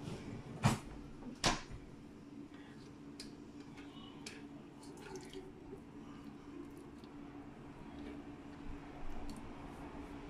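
Faint clicks and knocks of a plastic tub and kitchen items being handled, two sharper ones in the first second and a half, then a few fainter ticks, over a steady low hum.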